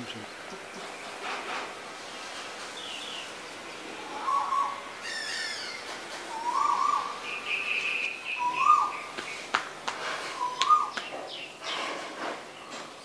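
Several birds calling. One repeats a short rising note about every two seconds, with higher chirps and a warbling call between, and a few sharp clicks near the end.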